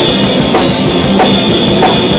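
Rock drum kit played hard at close range, bass drum and snare driving, with heavy accents about every two-thirds of a second over a sustained, droning band sound.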